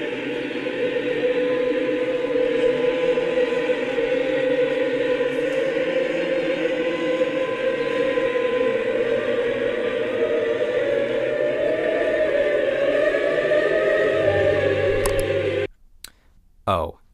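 Choral music, a choir holding long sustained notes, cutting off abruptly near the end.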